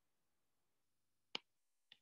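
Near silence, broken by a single sharp click about a second and a half in and a faint tick just before the end.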